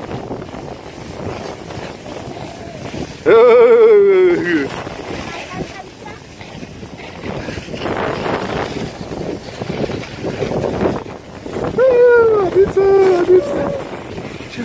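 Skis hissing over packed snow and wind rushing on the microphone while skiing downhill. A long, wavering shouted call comes about three seconds in, and a few shorter shouted calls come near the end.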